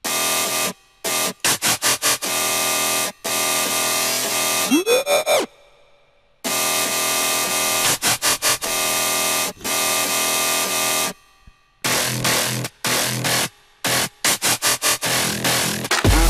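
Soloed dubstep-style bass synth patches made in Native Instruments Massive, played back from the remix's drop: long held, dense notes broken up by quick stuttering chops. A rising pitch sweep comes about five seconds in, followed by a short break.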